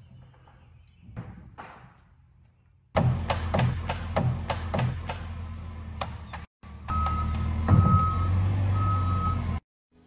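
A telehandler's diesel engine running at a house framing site, with a run of sharp knocks from the framing work about three a second. After a short break the engine runs on and its reversing alarm beeps three times.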